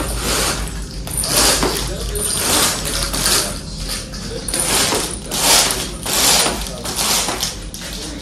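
Roller window shades being raised by hand: the shade mechanism rasps in a series of short pulls, roughly one every half second to a second.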